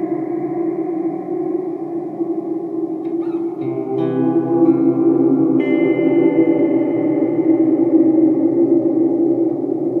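Electric guitar played through an Eventide Space reverb pedal on its Blackhole algorithm: sustained notes smeared into a long, dense reverb wash, with a few new notes coming in a few seconds in and layering over the tail.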